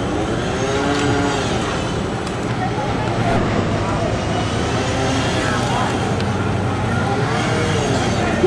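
A running engine's steady low drone, with indistinct voices calling over it.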